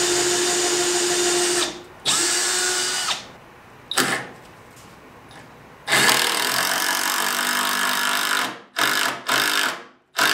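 Power drill driving long deck screws into wood, running in bursts: a run of about two seconds, a brief stop, a second's run, a short blip, then a longer run of about two and a half seconds and two quick bursts near the end.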